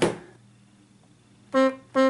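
Casio digital horn playing two short notes at the same pitch in quick succession, about a second and a half in.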